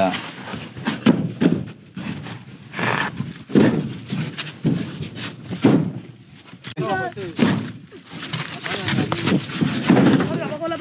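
Fired clay bricks knocking together as they are handed up and stacked in a truck bed: irregular hard knocks, several a few seconds apart. People talk nearby, most clearly about seven seconds in and near the end.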